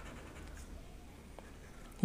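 Marker pen being drawn along paper, a faint steady scratching of the tip.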